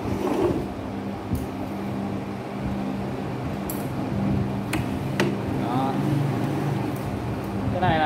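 Scattered metal clicks and knocks, about five, from the homemade square-chisel mortiser's carriage being cranked back and forth on its rails and its plunge lever being handled, over a steady low hum.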